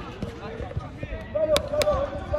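Players' voices calling across an outdoor football pitch, with two sharp knocks in quick succession about one and a half seconds in.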